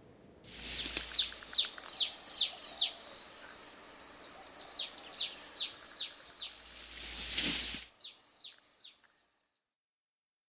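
Bird chirping: a quick series of short, downward-sliding chirps, about three a second, over a thin steady high tone and a faint hiss. A brief louder rush of noise comes about seven seconds in, then the chirps thin out and fade away.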